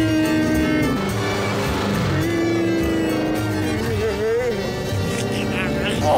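A voice holds two long, drawn-out notes over background music, the first dropping in pitch as it ends, then makes a shorter wavering sound.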